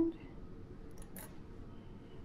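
Small dissecting scissors snipping off the short end of a tied thread: a faint, quick snip about a second in, over quiet room tone.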